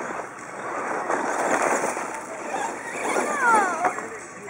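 Brushless electric RC truck driving on dirt, a rushing motor-and-tyre noise that swells and eases. Near the end its motor whine falls in pitch as it slows.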